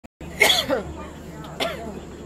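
A person coughing twice, the first cough louder and longer, over a steady low hum.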